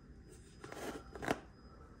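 Leafy plant stems rustling as they are handled and pushed into a plastic cup, soft at first, with one brief sharper crackle just over a second in.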